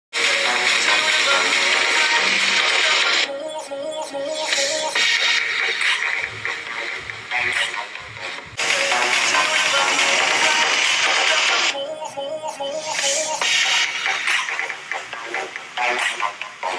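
Music played through a Motorola Edge 30 Ultra smartphone's stereo loudspeakers (bottom speaker plus earpiece, Dolby Atmos tuned), then the same passage played again through a Xiaomi 12 Pro's loudspeakers, the switch coming about eight and a half seconds in.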